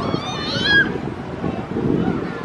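A short, high-pitched wavering squeal, meow-like, about half a second long near the start, over a murmur of background voices.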